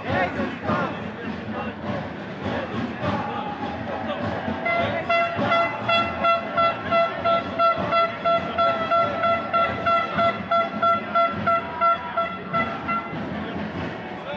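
A horn sounding rapid, even toots on one steady pitch, about three a second, for some eight seconds, over the noise of a marching crowd.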